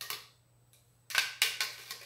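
Plastic spatula scraping and knocking inside a plastic blender jug as thick blended aloe vera is scraped out. There is one short scrape at the start, then a quick run of several scrapes about a second in.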